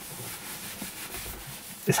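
A pause in a man's speech: a faint, steady hiss of background noise with a soft rub of hands against a shirt. His voice comes back in near the end.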